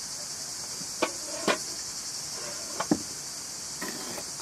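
A steady high-pitched chorus of crickets, over which a metal spoon knocks sharply against an earthenware bowl a few times: twice between one and one and a half seconds in, then a quick double click near three seconds.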